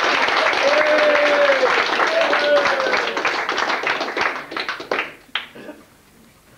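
Applause from a small crowd in a room, many hands clapping with a voice over it, tailing off over the last couple of seconds to a few last claps.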